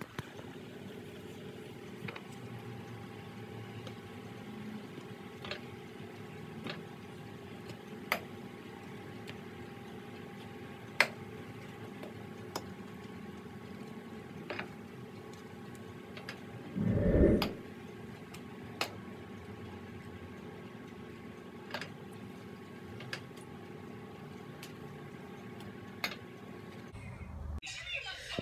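Metal kitchen utensils clinking now and then against dishes, about ten short sharp clicks spread out over a steady low hum, with one dull thump a little past halfway.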